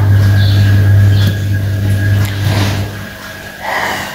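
A loud, steady low hum that stops about three seconds in.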